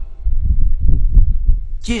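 Microphone handling noise: a run of irregular low thumps and rumble, louder than the voice around it. A man's voice resumes near the end.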